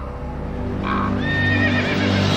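A horse whinnies: one wavering call starting a little after a second in, over steady low background music.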